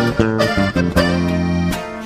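Live regional Mexican band playing the instrumental opening of a song: plucked guitar over held bass notes, with accordion around it.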